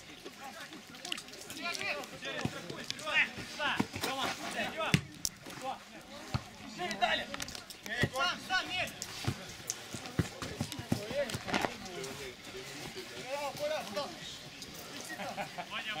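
Footballers calling and shouting to each other across the pitch, too far off to make out. The ball is kicked with a sharp thud several times in between.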